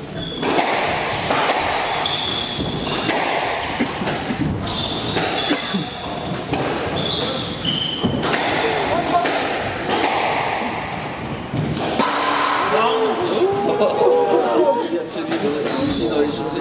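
Squash rally: the hard rubber ball cracks sharply off rackets and court walls again and again, while players' shoes squeak briefly on the wooden floor. The rally stops about twelve seconds in and voices talk to the end.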